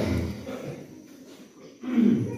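A man's voice through a microphone and PA in a hall, trailing off in the first half second. A brief lull of room tone follows, then a voiced sound starts again just before the end.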